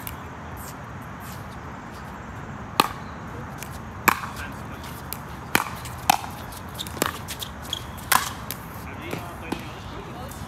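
Pickleball rally: paddles hitting the hard plastic ball, a series of about six or seven sharp pops roughly a second apart starting about three seconds in.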